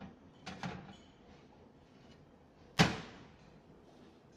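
Metal baking tray being slid onto an oven rack: light clinks of metal on the wire rack about half a second in, then a single loud metallic clank a little before three seconds in, with a short ringing tail.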